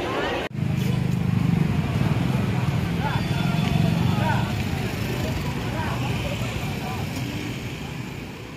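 Motorcycle and scooter engines running close by, a steady low hum, with people talking over it. The sound cuts in abruptly about half a second in and fades toward the end.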